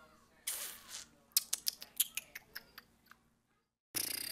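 A short breathy rush of noise, then a quick, irregular run of about a dozen sharp clicks lasting under two seconds, from computer keyboard and mouse use at the desk.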